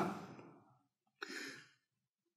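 A man draws a short breath between words, starting with a faint mouth click, about a second into a brief pause in speech.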